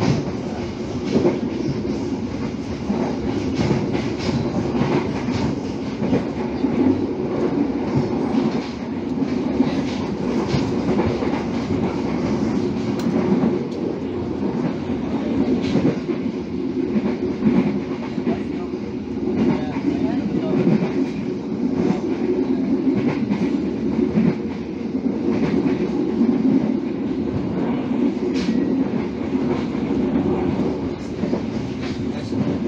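Passenger train running along the track, heard from inside the coach: a steady rumble of wheels on rails with scattered clicks.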